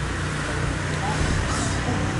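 Steady low background rumble with no pad strikes landing, and a brief hiss about one and a half seconds in.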